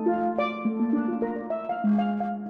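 Steelpan played with mallets on a pair of chrome pans: a quick run of struck melody notes, each ringing on after the strike.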